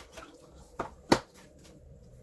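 Cardboard tarot card box handled and set down on a table: two short sharp clicks a little under and just over a second in, the second much louder.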